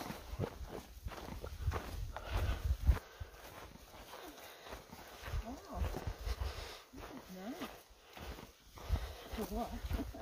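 Footsteps of hikers walking a trail through dry grass, with uneven low thumps that are strongest in the first three seconds. Faint voices come in here and there.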